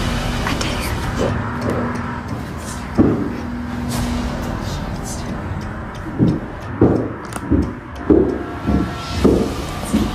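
Footsteps on carpeted stairs: a regular series of heavy thuds, a little more than one a second, starting about six seconds in, after a single thud about three seconds in, over a steady low hum.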